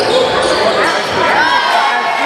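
Basketball game sound in a gym: a ball bouncing on the hardwood court amid shouting voices, with a brief high squeak about one and a half seconds in.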